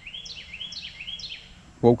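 A songbird singing a quick run of about seven short rising chirps, lasting about a second and a half.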